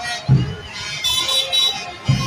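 Vehicle horns tooting over music with a low thumping beat about every half second and street crowd noise.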